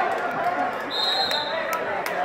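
Spectators talking in a gym, with scattered sharp knocks and a short, steady high tone about a second in.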